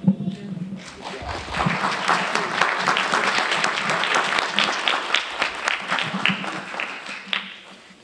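Audience applauding: dense clapping that builds up about a second in, holds, and thins out near the end.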